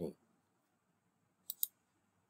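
Two quick, sharp clicks of a computer mouse button about a second and a half in, advancing a presentation slide.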